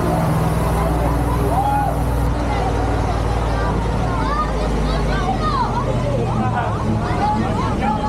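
A ride vehicle's engine running with a steady low drone under the overlapping chatter of passengers riding in the open truck.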